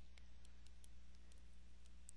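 A quick, irregular series of faint clicks and taps from a tablet PC stylus on the screen as words are handwritten, over a steady low hum.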